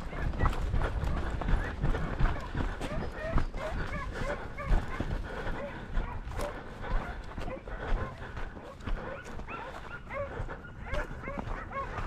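Hunting dogs giving tongue on a hare hunt, yelping and barking over and over in quick short cries. Underneath is the scuff and rustle of footsteps through dry brush.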